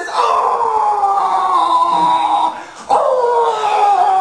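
Two long, loud howls with a short break between them, each sliding slowly down in pitch, in a man's imitation of a dog howling.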